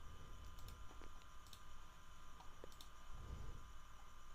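A few faint, scattered computer mouse clicks over a steady low electrical hum and hiss.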